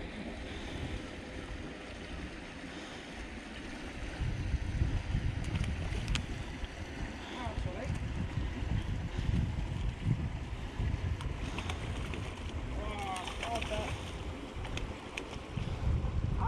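Wind buffeting the microphone: a low, uneven rumble that grows gustier about four seconds in.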